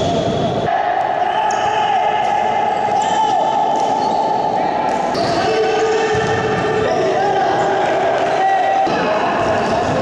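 Indoor futsal game sounds in an echoing sports hall: the ball thudding on the court floor and players calling out, with abrupt changes where the footage is cut.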